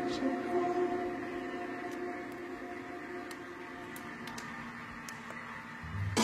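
The fading reverb tail of a slowed, reverb-heavy song: held chord tones die away slowly into a quiet, lingering wash, with a few faint clicks.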